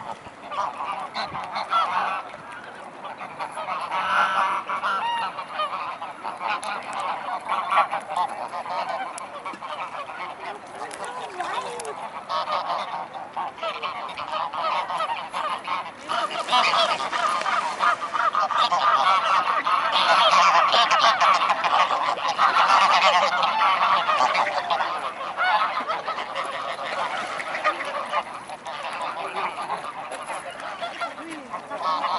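A group of greylag geese honking and gabbling without a break, the calling growing louder about halfway through and easing near the end.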